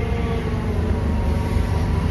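Komatsu forklift's engine running steadily as it maneuvers a load, a constant low rumble with a faint steady whine over it.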